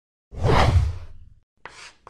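Animated-logo transition sound effect: a loud whoosh with a deep low end, lasting about a second. Near the end comes a short scratchy marker-stroke effect as a checkbox is drawn.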